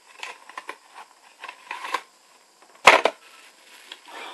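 Small cardboard advent-calendar box being handled and opened: scattered rustling and scraping, then a single sharp snap about three seconds in, the loudest sound.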